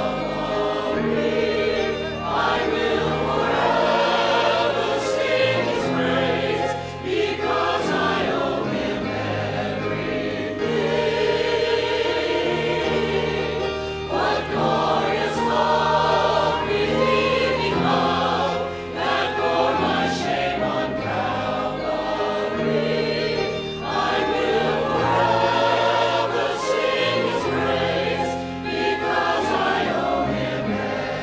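Church choir singing a hymn, accompanied by flute and other instruments, over steady sustained bass notes.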